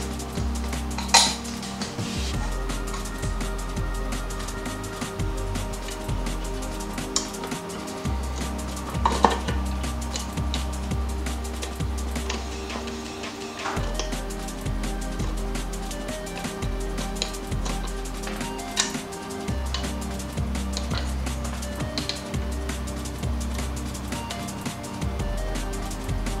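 Metal clinks and knocks of a throttle body being handled and pressed against an intake manifold spacer and gasket, over steady background music. The sharpest clinks come about a second in and about nine seconds in.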